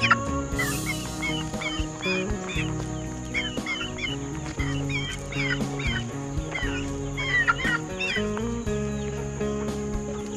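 Chickens clucking, with many short high calls throughout, over background music with steady held chords.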